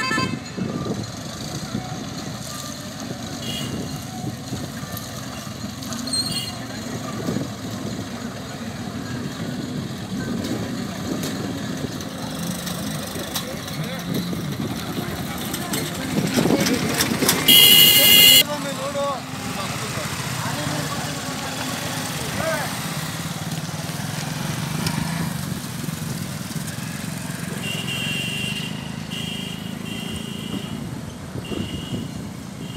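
Road traffic on an unpaved road: motorcycle and auto-rickshaw engines passing. A vehicle horn sounds for about a second a little past the middle and is the loudest sound, and a thin steady whine comes in near the end.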